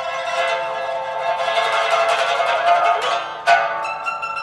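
Pipa playing a rapid tremolo on sustained notes, then a single sharp, loud strummed chord about three and a half seconds in that rings on.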